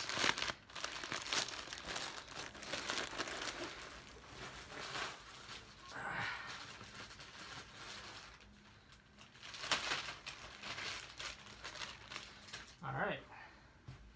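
A mail package being opened by hand: irregular crinkling and rustling of the wrapping, with some tearing.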